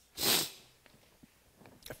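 A short, sharp breath close to a headset microphone, a hiss lasting about half a second near the start, followed by near quiet with a few faint clicks.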